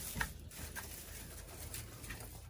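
Quiet goat pen: faint rustling with a few light clicks, goats shifting about on the hay bedding, the clearest click about a quarter second in.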